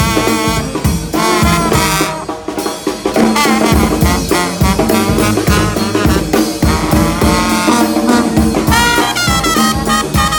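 New Orleans-style street brass band playing live: trumpets and trombone over a sousaphone bass line and a steady bass-drum beat. The band eases off briefly about two seconds in, then comes back in full, with a high trumpet line near the end.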